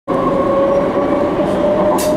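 A steady hum over the murmur of a crowd's voices.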